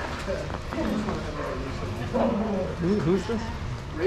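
Dogs barking and vocalizing in a playgroup, with people talking over them.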